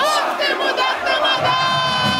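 Rock-club audience shouting together during a break in the band's bass and drums; the low end of the band comes back in about one and a half seconds in, under a long held note.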